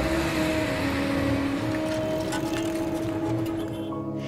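City street traffic noise under background music with sustained notes that shift pitch now and then.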